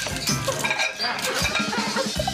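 Background music over the clinking and clatter of a metal plate as a mini-pig roots through it for potato chips.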